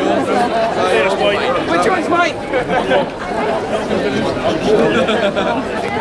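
Chatter of a group of people talking at once, several voices overlapping.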